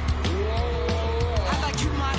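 Live rock band playing, with steady drums and bass underneath. Above them a sliding, wavering tone glides up and then falls away over about a second and a half.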